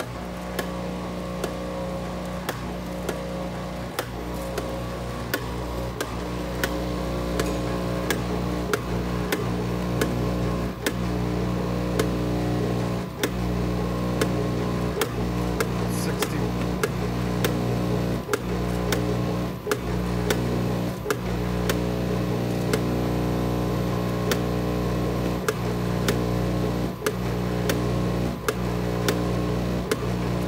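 Batchmaster IV five-gate counter running: a steady electric hum from its vibratory feed bowl, with frequent irregular clicks and clacks from the counting gates and from gummies dropping through the chutes.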